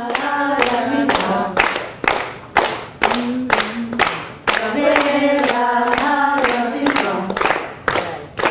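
A group of voices singing a chant-like song together, with hand claps keeping a steady beat of about two claps a second.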